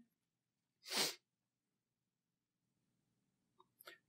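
A single short, sharp breath noise through the nose about a second in, over faint low room hum. A small mouth click comes just before speech resumes.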